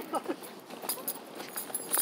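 Footsteps on pavement: a few light steps while walking.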